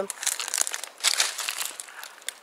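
Irregular crackling and rustling of dry twigs, needles and leaf litter being trodden and brushed through in a garden border, easing off near the end.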